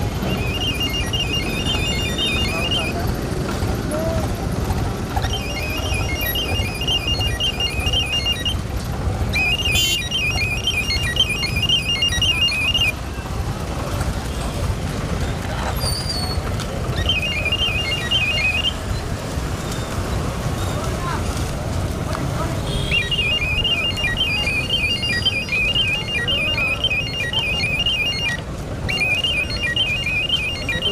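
A high, rapidly pulsing electronic warble, like an alarm or musical horn, sounds in six bursts of a few seconds each over steady street and traffic rumble.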